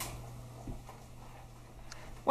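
Faint soft taps and squishes of a measuring spoon and whisk working cream cheese into a skillet of thick sauce, over a low steady hum.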